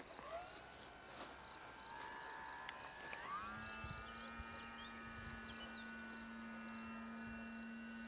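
Motor and propeller of a Condor Magic EVO 4 RC motor glider whining faintly, rising in pitch about a third of a second in and again about three seconds in, then holding a steady pitch as the throttle is opened. A steady high-pitched insect buzz runs underneath.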